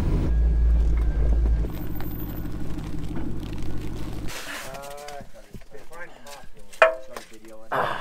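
Off-road recovery truck's engine running steadily, heard from inside the cab, cutting off abruptly about four seconds in. After that, people talk quietly outdoors, with one sharp knock near the end.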